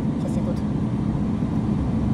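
Steady low rumble of a BMW X1 being driven slowly, heard from inside its cabin: engine and road noise.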